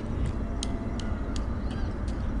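Falcon 9 first stage climbing on its nine Merlin 1C engines at full power, heard through the launch feed as a steady low rumble. A few faint, sharp clicks sit on top of it.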